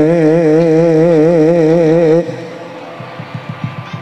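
A man's solo voice singing Javanese verse through a microphone, holding one long note with a wide, even vibrato. The note stops about halfway through, leaving a quieter stretch with a few faint taps.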